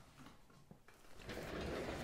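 Quiet room tone, then about a second in a soft rustling rush of handling noise as a plastic spray bottle is taken down from a shelf.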